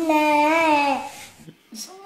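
A baby's babbling: one long held vocal sound with a gently wavering pitch, lasting about a second before fading.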